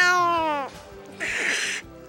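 A person's long, high-pitched squealing voice that falls in pitch and breaks off about half a second in, followed a moment later by a short breathy sound.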